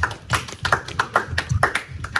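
A small group of people clapping their hands, the claps uneven at about five or six a second.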